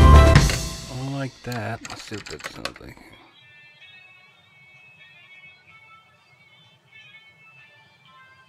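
Playback of a song in progress, drum kit and guitar, that cuts off about half a second in. A few wavering, sliding sounds and clicks follow over the next two seconds, then only faint steady tones.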